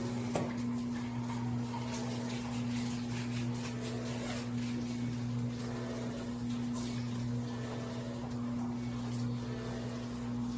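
Steady electric motor hum from a motorized Leander chiropractic table running under a patient during motion palpation, with a few faint clicks.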